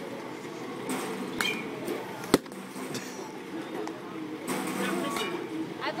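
A single sharp crack of a baseball impact in a batting cage, a little over two seconds in, with a few fainter knocks around it, over background voices.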